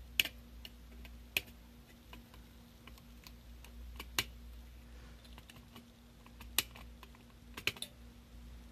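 Flush-cut pliers snipping the excess wire leads of soldered components on a circuit board: about six sharp clicks at uneven intervals, one or more seconds apart, with two in quick succession near the end.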